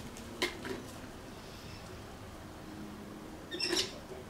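A plastic bag of lawn granules being handled: a sharp click about half a second in, faint rustling, and a short crinkling rustle near the end.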